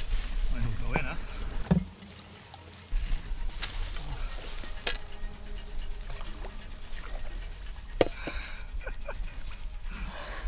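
Handling noise from a head-worn camera as an angler plays and nets a hooked carp among bankside reeds: a low rumble with rustling and scattered knocks and clicks. The sharpest knock comes about eight seconds in.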